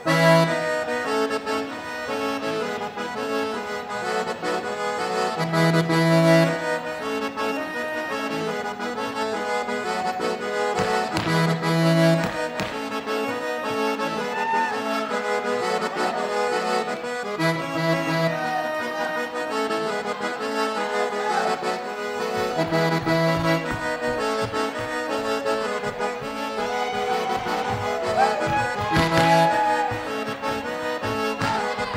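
Accordion (gaita) playing the chula tune, its low bass phrase coming round about every six seconds. A chula dancer's boots strike the wooden floor in his footwork, with a few sharp stamps standing out, one just after the start, a couple around the middle and one near the end.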